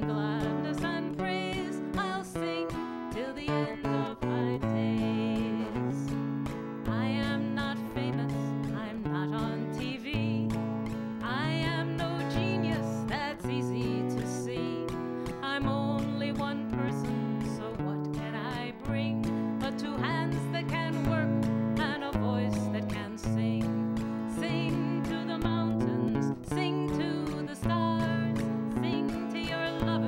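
A woman singing to her own acoustic guitar accompaniment, playing steady chords that change about once a second.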